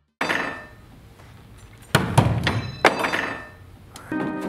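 Sharp strikes on a hard object, each followed by a ringing decay: one about a quarter second in, then a louder cluster of three around two to three seconds in.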